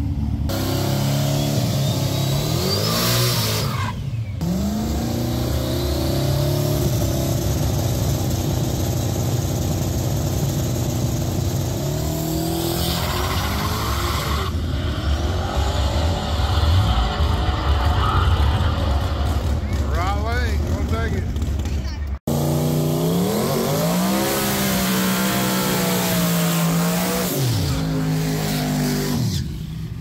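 Drag-race cars' engines revving hard and running at full throttle, with tire squeal from burnouts. The revs rise sharply a few times, and the sound breaks off for an instant about two-thirds of the way through.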